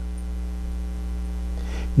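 Steady low electrical mains hum picked up in the recording, filling the pause, with a soft intake of breath near the end.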